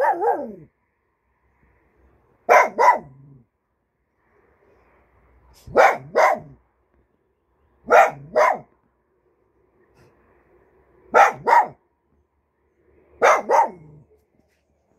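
A small black-and-white long-haired dog barking in short pairs, two quick barks at a time, with a new pair every two to three seconds.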